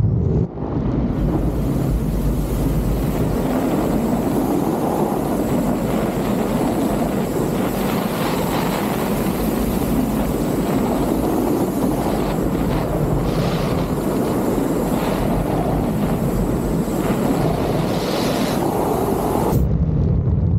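Wingsuit freefall: loud, steady wind rushing over the camera microphone as the flyer glides at speed.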